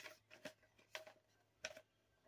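Near silence with a few faint, short ticks and rustles of a plastic candy pouch being handled after opening, the clearest one near the end.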